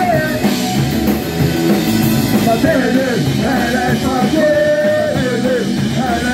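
Live punk rock band playing loud: electric guitars, bass and drums, with a singer shouting the vocals into a microphone and crowd voices singing along.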